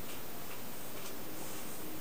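Quiet hands-on massage sounds: faint soft brushes and light ticks over a steady hiss.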